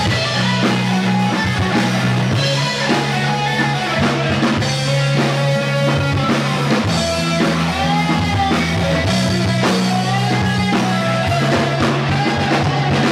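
Live rock band playing loud: electric guitar, bass guitar and drum kit, with low bass notes held and changing every second or so over steady drumming.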